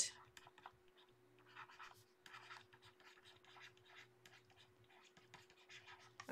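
Faint scratching of a stylus on a drawing tablet: a run of short, irregular pen strokes as words are hand-lettered. A faint steady hum runs underneath.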